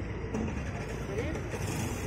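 Steady low rumble of outdoor background noise, with faint voices of the surrounding crowd.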